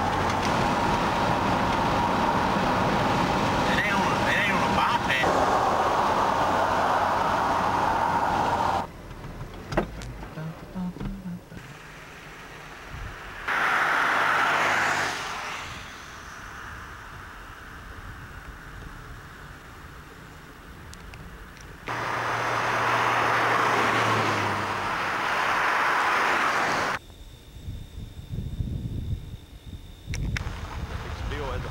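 Car cabin noise at highway speed: steady road and engine noise with a low hum, which cuts off abruptly about nine seconds in. A quieter stretch follows, broken by two louder spells of noise of unclear source.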